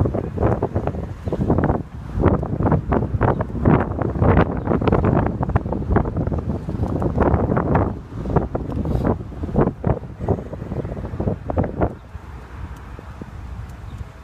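Wind buffeting a phone's microphone in irregular gusts, strongest in the first half and easing near the end.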